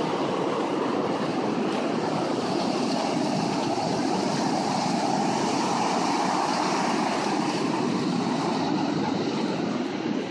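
Ocean surf breaking and washing up a sandy beach: a steady rushing noise that holds level throughout.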